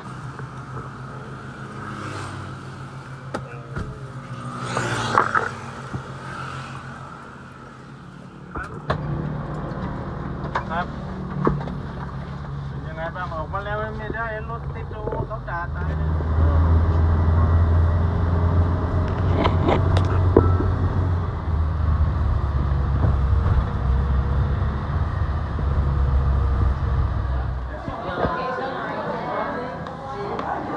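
Engine and road rumble inside a passenger van on the move, growing louder about halfway through, with a few sharp clicks.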